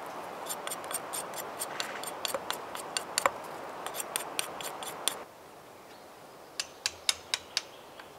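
Knife blade whittling a thin wooden stick: a quick run of short sharp cutting and scraping strokes, about five a second, stopping suddenly just after five seconds in. Four more separate sharp clicks follow near the end.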